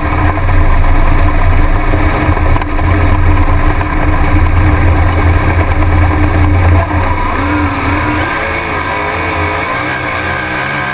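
A USAC midget race car's four-cylinder engine, heard onboard from the cockpit, running steadily at speed. About seven seconds in it gets a little quieter and its note starts to rise and fall.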